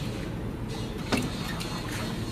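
Metal rotary-engine parts handled by hand, with one sharp clink a little past a second in, over a steady low hum.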